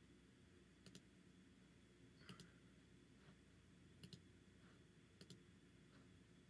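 Faint computer mouse double-clicks, four pairs of short clicks spread a second or two apart over a near-silent room.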